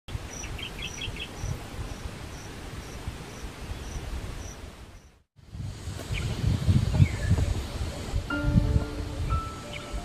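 Outdoor hillside ambience with wind rumbling on the microphone, a high chirp repeating about twice a second and a few short bird trills. After a brief dropout the wind gusts grow louder, a bird calls a few times, and music with long held notes comes in near the end.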